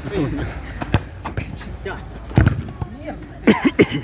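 Football being kicked on artificial turf: a few sharp thuds of the ball, the loudest about two and a half seconds in. Men's short shouts come near the end.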